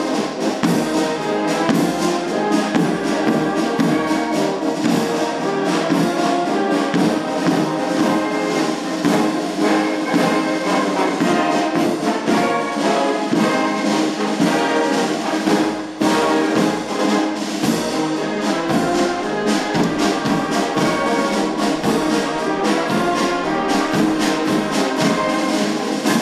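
A police wind band playing live: saxophones, clarinets, trumpets, trombones, horns, tuba and flute over a drum beat.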